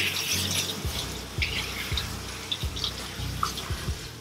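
Water from a handheld grooming-tub sprayer running steadily onto a cat's wet coat and splashing off into a stainless steel tub, with soft background music and its beat underneath.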